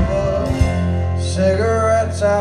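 Live country band music: strummed acoustic guitar with fiddle, a melody line coming in over the chords near the end.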